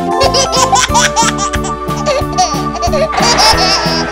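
A cartoon baby giggling and laughing over children's background music with a steady beat. A hissing noise joins about three seconds in.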